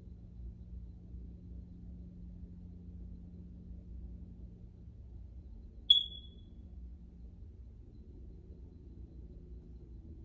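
A single short, high-pitched electronic beep about six seconds in, starting with a click and fading quickly, over a faint low steady hum.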